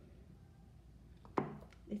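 Quiet room, then a single sharp knock about a second and a half in, as of a hard object set down on a hard surface.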